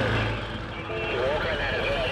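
Quad bike (ATV) engine running as it is ridden over the sand, a steady low hum, with faint voices in the background.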